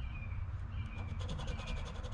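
A coin scraping the coating off a scratch-off lottery ticket: quick, faint rasping strokes starting about halfway in, over a low steady background rumble.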